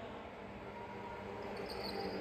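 Faint ambience of an indoor go-kart track with karts running: a low steady hum and a faint high whine near the end.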